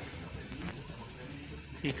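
Low, steady background noise of a small room picked up by a phone microphone, with no distinct event. A man's voice starts again near the end.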